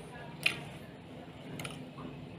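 A person chewing roasted pork close to the microphone, with a sharp mouth click or crunch about half a second in and a softer one near the end.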